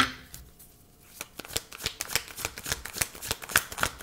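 A deck of tarot cards being shuffled by hand: a rapid run of short card clicks and snaps that starts about a second in.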